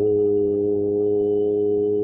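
A loud, sustained musical tone that holds steady, with a low hum beneath it and several pitches stacked above.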